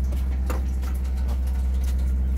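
Steady low hum of a ship's engine running, with a brief knock about half a second in.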